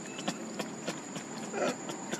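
Long-tailed macaque troop at close range: irregular small clicks and taps, with one short call about one and a half seconds in.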